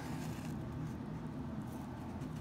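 Quiet room tone with a faint, steady low hum and no distinct sounds.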